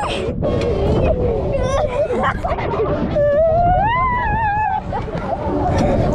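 Riders' voices on a moving fairground ride, with a long rising wail a little after three seconds and shorter cries before it. Fairground music plays underneath, and wind rumbles on the microphone.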